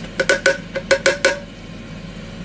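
A quick run of about eight light knocks, each with a short ring, over about a second: a plate being tapped with the vegetable chopper's plastic part to knock diced carrot off onto it.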